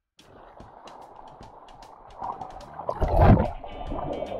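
Sea water sloshing and splashing right at the camera, with many sharp clicks and a loud rush about three seconds in.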